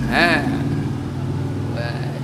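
An engine running steadily with a low, even hum, with a brief voice sound just after the start.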